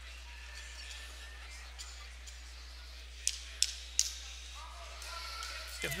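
Gymnasium background with a steady low hum and faint distant voices, broken by three short, sharp impacts about three to four seconds in. A man starts speaking at the very end.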